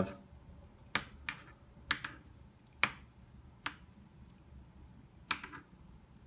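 A plastic pen being handled and spun around the thumb, giving about six sharp, irregular clicks and taps as it knocks against the fingers.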